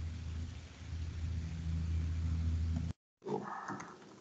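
A low, steady hum comes over a video-call line from an open microphone and cuts off suddenly about three seconds in. A brief voice-like sound follows near the end.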